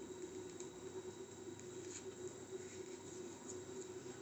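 Faint rustling and a few soft crinkles from rolled newspaper and paper tape being squeezed and handled, over a steady low background hum.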